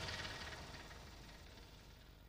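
Faint steady hiss with a low hum, fading toward near silence: background noise in a pause between narration.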